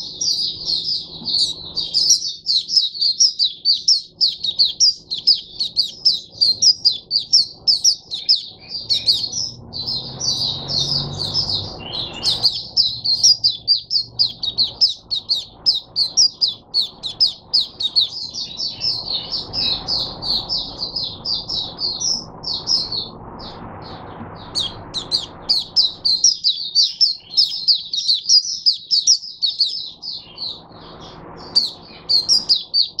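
White-eye singing a long, rapid, high-pitched twittering song that runs almost without pause, broken by a few brief gaps.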